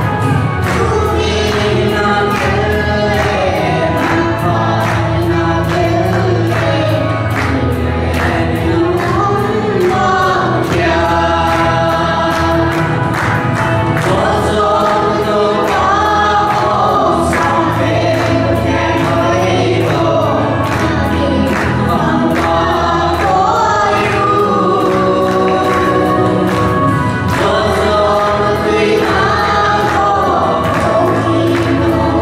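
A man, a boy and a girl singing a Christian song together into microphones, over an accompaniment with a steady beat.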